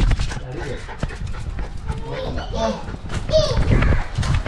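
A dog moving about with an action camera strapped to its back: the harness rubs and knocks against the camera's microphone, making a steady low rumble with many small knocks.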